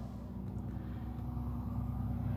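A car approaching on the road outside, its tyre and engine noise slowly growing louder, heard faintly through window glass over a steady low hum.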